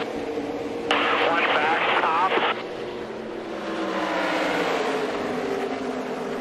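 A pack of NASCAR Xfinity stock cars with V8 engines running at full throttle in a steady drone as the field takes the green flag. About a second in comes a short spotter's call over the team radio.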